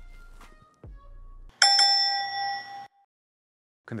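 A single bright bell chime, struck sharply and ringing for just over a second as it fades, after a short stretch of faint background music.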